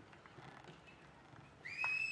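Faint hoofbeats of a horse cantering on arena sand. About one and a half seconds in, a loud, steady, high whistling tone starts and holds, with regular ticks under it.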